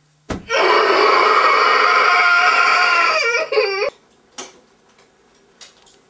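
A person's loud, drawn-out crying wail of about three seconds, breaking into a short wavering sob at the end. A few faint clicks follow.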